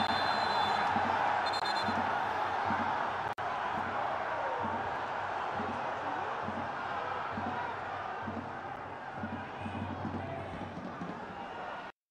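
Stadium crowd noise at a football match: a steady mass of voices from the stands, with two brief high tones in the first two seconds and a momentary drop-out about three seconds in.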